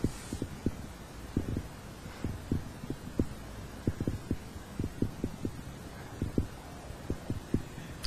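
Soft, low thumps picked up by a clip-on microphone worn on the chest, several a second at uneven intervals, over a faint steady background.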